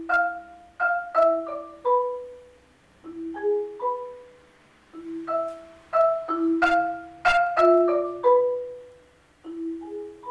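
Solo marimba played with yarn mallets, a joropo: phrases of struck, ringing wooden-bar notes that step downward in pitch, with short pauses about three seconds in and near nine seconds.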